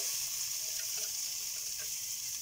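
Wet, rinsed moong dal sizzling in hot ghee in an aluminium pressure cooker as handfuls are dropped in: a steady hiss with a few faint soft ticks.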